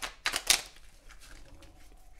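Tarot cards being shuffled by hand: a quick run of crisp card clicks in the first half second, then fainter rustling.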